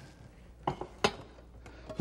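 A few light clinks and knocks of dishes and utensils on a kitchen counter: two or three short, sharp ones about two-thirds of a second and one second in, over a low steady hum.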